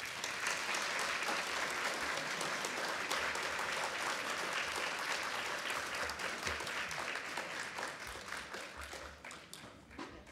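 Audience applauding at the end of a talk: sustained clapping from a seated crowd in a large hall, which fades away over the last couple of seconds.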